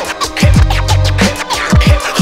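Hip hop instrumental with DJ turntable scratching over a drum beat and deep bass, with repeated quick falling pitch sweeps.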